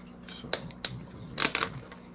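Snap-on lid of a thin plastic deli cup being pried off by hand: a couple of sharp clicks, then a louder crackling cluster as the lid comes free.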